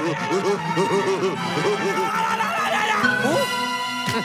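A cartoon wolf's drawn-out, whinny-like laugh: a quick string of short rising-and-falling "ha" sounds, over bouncy background music, that trails off about two and a half seconds in. Near the end the music changes to a held chord with a rising slide.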